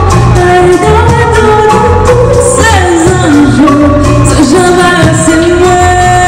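A woman singing a melody into a microphone with a live band, with keyboard and bass guitar under her voice.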